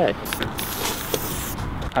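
Aerosol spray-paint can spraying: one hiss of a little over a second that stops abruptly.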